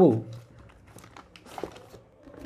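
The end of a spoken word, then faint, irregular rustling crackles and small clicks.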